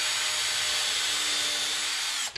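Cordless drill running at a steady speed with a faint high motor whine, boring a pin hole into the end of a wooden shutter louver through a plastic drilling template.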